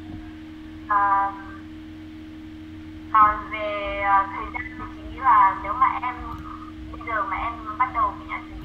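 A person's voice speaking in short phrases through a video-call connection, with a steady hum underneath.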